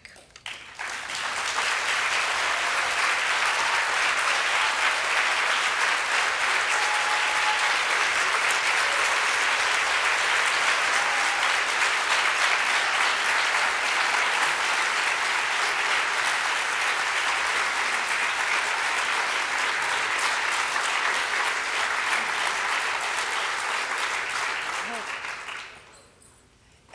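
Large audience applauding steadily, building about a second in and dying away near the end.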